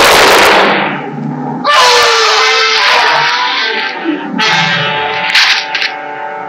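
A single revolver shot at the very start, loud and ringing on for most of a second. Dramatic orchestral film score follows from just under two seconds in.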